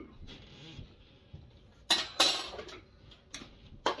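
Kitchen dishes and cutlery clinking and clattering as they are handled, with two sharp clatters close together about halfway through and two lighter knocks near the end.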